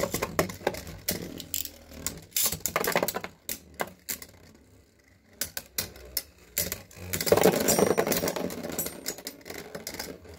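Three Hasbro Beyblade spinning tops clashing in a plastic stadium: rapid clicks and rattles as the tops knock into each other and the stadium wall. The hits thin out around four to five seconds in, then come thick and fast around seven to eight seconds.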